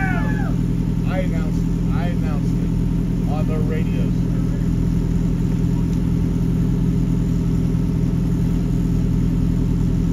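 A mini stock race car's engine idling steadily, a low, even hum, with a few short voice calls over it in the first four seconds.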